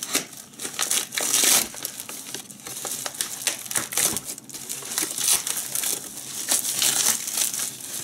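Plastic postal mailer crinkling and tearing as it is slit open with a folding knife and pulled apart by hand: an irregular run of rustling bursts, the loudest about a second in.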